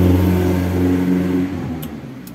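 A steady low motor hum at an even pitch that fades away about a second and a half in.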